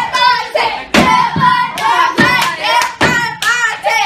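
A group of teenagers singing in high voices to a rhythm, with sharp hand claps on the beats.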